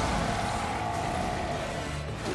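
Steady rumble of an animated explosion in the show's sound mix, easing off a little toward the end.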